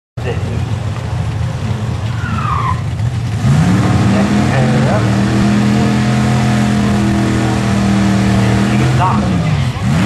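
Ford Mustang GT V8 held at high revs through a burnout, with the rear tyres spinning and squealing. The revs climb about three and a half seconds in, hold steady, and drop off near the end.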